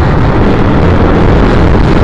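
Loud, steady wind rush on the microphone of a camera riding on a moving 2010 Triumph Bonneville T100, mixed with the motorcycle's air-cooled parallel-twin engine running.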